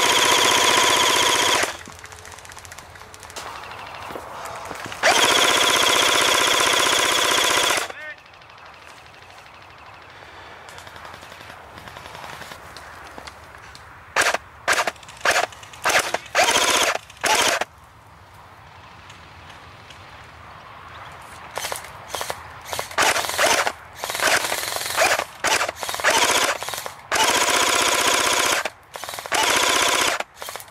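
Airsoft rifles firing on full auto: two long bursts near the start, then a run of short bursts from about halfway through to the end.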